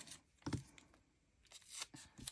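Faint paper rustling from a sticker and its backing sheet being peeled apart and handled, in two short bursts: one about half a second in and one near the end.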